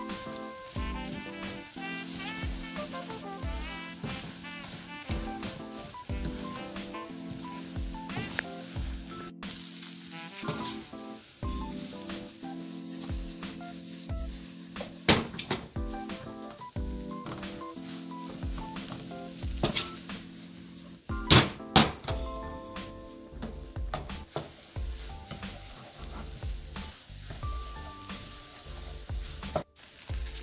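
Rice sizzling in a wok as it is stir-fried and turned with a wooden spatula, with a few sharp knocks of the spatula against the pan, the loudest about halfway through and twice more some seconds later. Background music plays under it.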